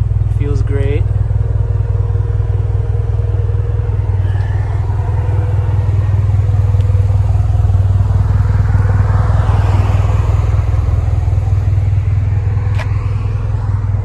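Gen 4 3S-GTE turbo four-cylinder idling steadily through an aftermarket cat-back exhaust, a deep, even rumble. A passing car swells and fades about two thirds of the way through.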